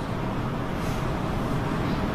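Steady low rumbling background noise with no speech: the room tone of the recording during a pause.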